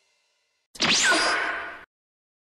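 A whoosh sound effect with a sweeping pitch, about a second long, starting sharply about three-quarters of a second in and cutting off abruptly.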